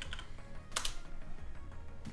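Computer keyboard keys clicking as a web address is typed, with one sharp keystroke standing out a little under a second in, over quiet background music.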